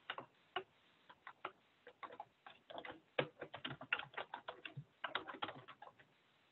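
Computer keyboard typing: a run of irregular key clicks, a few at first and then quicker from about three seconds in, as a short phrase is typed.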